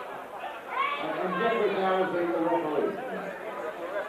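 Indistinct voices of people talking.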